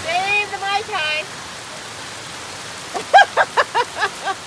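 Heavy rain falling steadily on a pool deck and an open umbrella. A voice speaks in the first second, and a person laughs in short bursts near the end.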